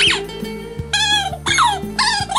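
Shih tzu howling along to a love song: high, wavering calls, one sliding down steeply in pitch about one and a half seconds in, over the song's music.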